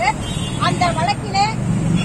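A person speaking, with a steady low rumble underneath.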